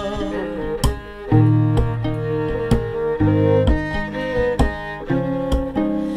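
Instrumental fiddle break: a bowed violin plays held notes over a violin played guitar-style, plucked about once a second. There is no singing.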